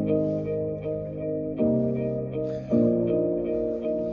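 Instrumental intro of a recorded backing track, before any singing: sustained chords that change twice, about a second and a half in and again near three seconds.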